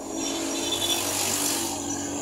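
Motor vehicle engine and road noise swelling for about a second and a half, then easing off near the end, heard from inside a vehicle's cab as traffic moves close alongside.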